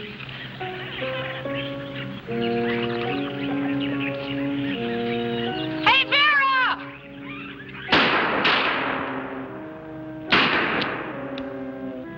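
Dramatic film score music with held orchestral notes. About six seconds in, a brief shrill call rises and falls in pitch. Three sharp gunshots with echoing tails follow: two about half a second apart, then one more about two seconds later.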